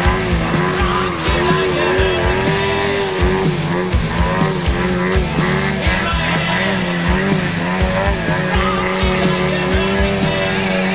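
Desert Aircraft gasoline engine of a large RC aerobatic biplane, with its propeller, running in a hover. Its pitch wavers up and down continuously as the throttle works. A rock music track with a steady drum beat plays over it.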